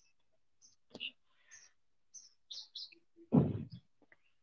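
Small birds chirping in short, high, scattered calls in the background, with a brief louder voice sound a little over three seconds in.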